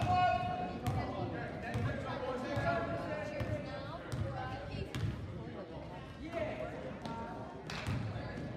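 Basketball being dribbled on a gym floor, a low bounce about once a second, echoing in the hall, with voices in the background.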